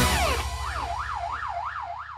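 Cartoon police siren sound effect, a fast wail swinging up and down about three times a second, coming in about half a second in over the song's fading last low note and dying away at the end.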